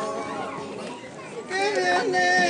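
A man singing a slow yaraví unaccompanied, with long held notes that glide between pitches. His line falls away at the start, leaving a short breath pause with faint children's voices, and the held singing comes back about one and a half seconds in.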